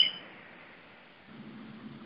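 A short high electronic beep right at the start, then faint steady hiss.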